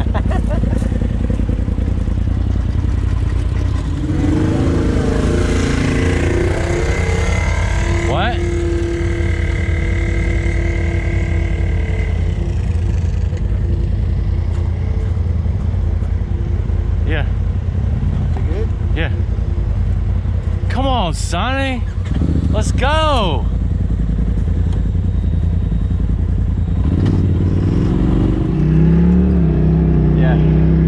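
Polaris RZR Turbo side-by-side engine running, its pitch rising a few seconds in and again near the end as it pulls away, with a steady higher tone in between. Two short rising-and-falling sounds come about two-thirds of the way through.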